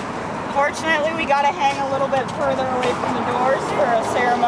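Road traffic passing as a steady rushing noise, with people's voices talking over it from about half a second in.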